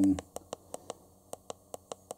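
Quick, light clicks of a media player's remote control buttons being pressed over and over, about four a second, scrolling down through a list of folders.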